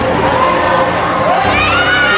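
A group of children shouting together, with loud rising-and-falling cries near the end.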